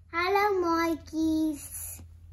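A young girl's voice in two drawn-out, sing-song phrases, the second starting about a second in, over a steady low hum.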